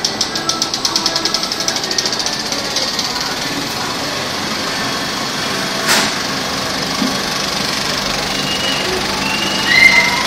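Cinema film projector starting up: its mechanism clatters fast and speeds up over the first few seconds into a steady running whir, with a single sharp click in the middle. Near the end, louder sound from the film starts to come in.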